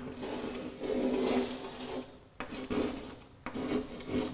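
Chalk scraping on a blackboard as curved lobes are drawn: long scratchy strokes, a brief break with a sharp tap of the chalk about two and a half seconds in, then more strokes.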